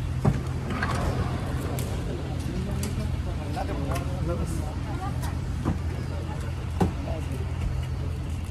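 Passenger van's engine idling with a steady low hum, with a few short knocks as people climb aboard through the open sliding door.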